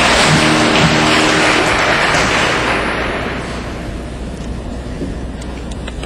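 An audience applauding, dying away over the second half, with a few faint guitar notes in the first second.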